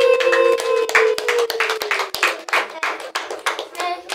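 Hands clapping in a quick, steady rhythm. A voice holds one long note at the start, fading out after about a second and a half.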